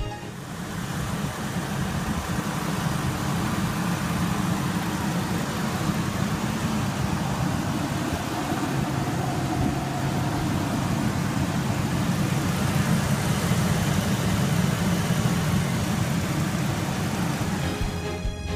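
A Ford E-450's 10-cylinder gasoline engine running steadily, a low rumble with noise above it. It starts at a cut and builds over the first second or two.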